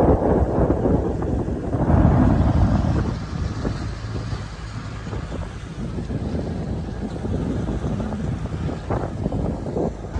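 Wind buffeting the microphone on a moving motorboat, over the low rumble of the boat running through the water. It is loudest about two seconds in and eases off a little by the middle.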